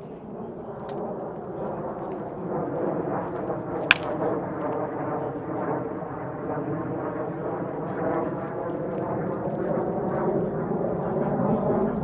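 Airplane passing overhead, its roar growing steadily louder. One sharp crack of a bat hitting a baseball comes about four seconds in.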